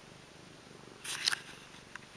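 Domestic cat purring steadily up close, with a short burst of clicking and rattling about a second in as its paw knocks the small trinket toys together.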